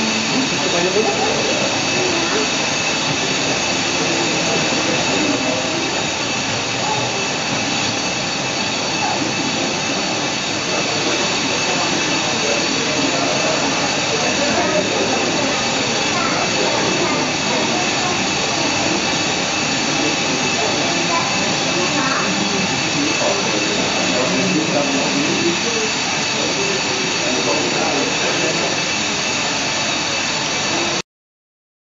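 Steady jet-engine whine and rush, the played-back engine sound of the model airport's airliners, with a murmur of visitors' voices underneath.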